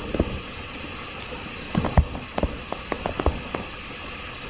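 Stylus tapping and scratching on a tablet during handwriting: a run of small, irregular clicks, densest in the second half, over a steady background hiss.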